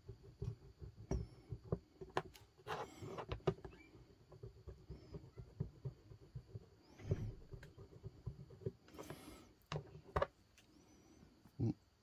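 A rubber eraser rubbed back and forth over a small copper coin on a plastic tray: quick, irregular scrubbing strokes with a few louder rubs, polishing dirt and tarnish off the coin's face.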